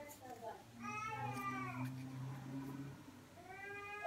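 Cat meowing: a long drawn-out meow about a second in, then a shorter, rising one near the end.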